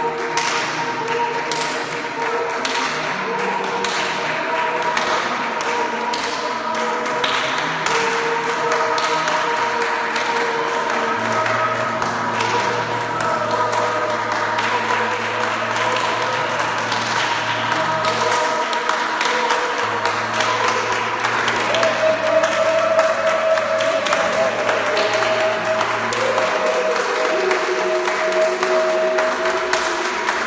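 A group of people making participatory music: several long held tones overlap throughout, with new higher pitches entering about two-thirds of the way through, over a continual scatter of hand claps, taps and thumps. A low drone sounds twice in the middle.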